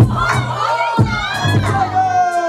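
A hip-hop beat plays loudly over the club sound system, with heavy kick-drum hits at the start and about a second in. Several voices in the crowd shout and whoop over it at the same time.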